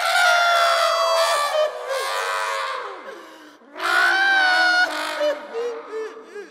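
Cartoon character voices giving long, wordless wailing cries with sliding pitch, in three stretches with short breaks.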